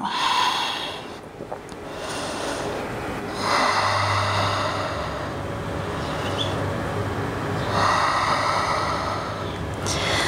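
A woman's slow, deep, audible breaths: a short breath at the start, then two long breaths of about three seconds each.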